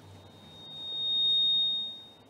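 A single high-pitched steady tone that swells to loud about a second in, then fades away near the end.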